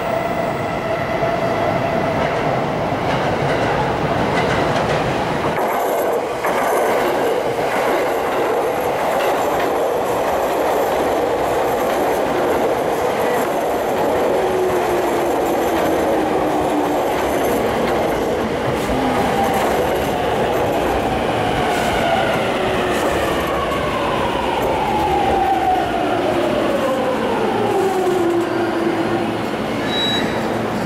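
JR East E231-500 series Yamanote Line electric train pulling into the platform: wheel and running noise with a motor whine, which falls steadily in pitch over the last ten seconds as the train slows.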